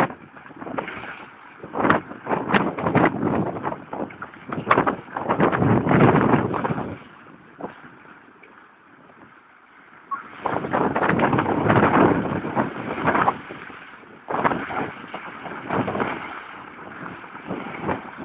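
Dog digging into a pebble beach: irregular bursts of stones scraping and rattling under its paws, with a quieter pause in the middle.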